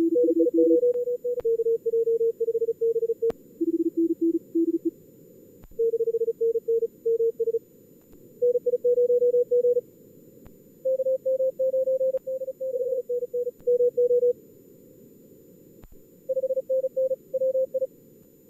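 Simulated CW contest audio: fast Morse code, keyed at around 40 words per minute, in short bursts of exchanges from two radios. Most runs are at a higher pitch and a few at a lower one, over a narrow filtered hiss of band noise. A few faint clicks sound in between.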